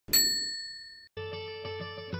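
A single bright, bell-like ding rings out and cuts off abruptly about a second in. Music then starts, a held chord.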